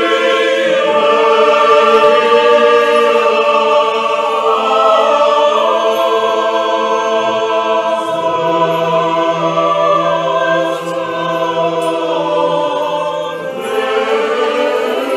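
Choral music: a choir singing slow, sustained chords. A low bass note is held through the second half, and the sound dips briefly near the end.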